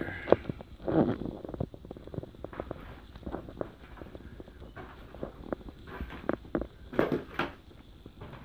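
Footsteps climbing bare wooden stairs, with plaster debris crunching underfoot: a string of irregular knocks and crackles, the loudest about a second in and again about seven seconds in.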